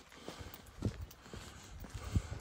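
A person's footsteps at walking pace, a soft thud about every half second.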